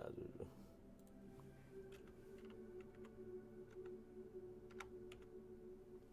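Near silence: a faint steady hum with a few faint, scattered clicks.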